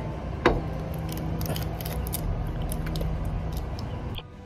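Fingers peeling the shell off a boiled balut egg: a sharp crack about half a second in, then a run of small crackles and ticks as bits of shell break away.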